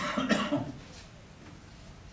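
A person coughing once, loudly and briefly, right at the start, then quiet room tone with faint strokes of a marker on a flip-chart pad.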